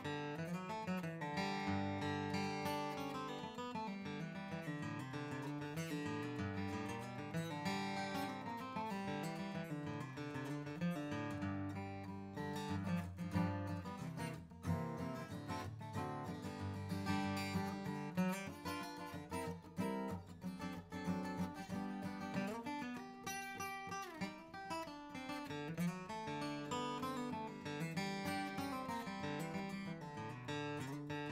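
Furch Green Series D-SR dreadnought acoustic guitar, Sitka spruce top with Indian rosewood back and sides, played solo with chords strummed and picked and left to ring, changing throughout.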